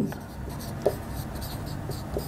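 Marker pen writing on a whiteboard: faint, irregular scratchy strokes as letters are drawn, with a small tick a little under a second in.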